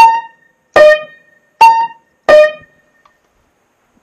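Upright piano: four single notes struck one at a time, alternating between a higher and a lower pitch, each ringing briefly and fading. These are the two keys that have just been repaired being tried out.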